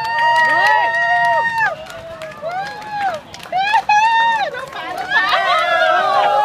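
People shouting and whooping at a race finish, with several high-pitched voices overlapping. Some calls are held for a second or more and others are short rising-and-falling shouts.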